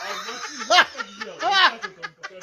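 A person laughing in short voiced bursts, with no words.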